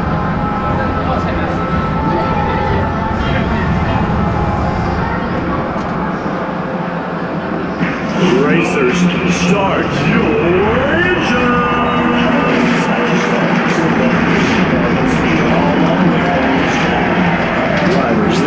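Indistinct voices and chatter over a steady low hum in a busy indoor arena, growing louder about eight seconds in.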